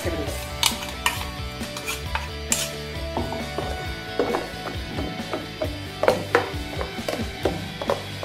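Steel spoon scraping and knocking against a steel mixer-grinder jar and a steel bowl as thick ground masala paste is scraped out and stirred, in irregular clinks and taps, the sharpest a little after six seconds in. Background music plays under it.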